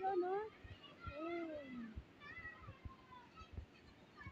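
Heavy rain falling steadily, with scattered low thumps. A short rising-then-falling vocal call comes about a second in, and faint distant voices follow.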